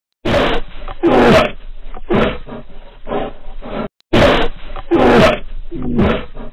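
A recorded animal roaring in a series of deep growling roars, loud. After a short break at about four seconds the same run of roars plays over again.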